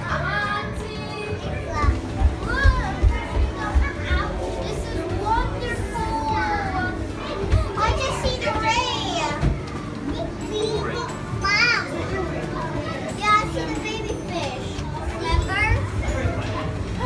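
Busy chatter of many children's voices, high calls and exclamations overlapping throughout, over the general hubbub of a crowded indoor attraction.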